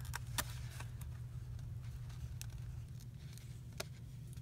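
Paper and craft pieces being handled: a few light, separate clicks and rustles, over a steady low hum.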